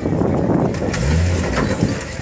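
Lifted Jeep's engine revving as it drives up onto a car to crush it, the pitch rising briefly about a second in, over a dense background of outdoor noise.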